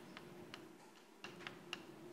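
Chalk tapping and clicking on a blackboard as an equation is written: faint, irregularly spaced clicks, about six or seven of them, over a faint steady room hum.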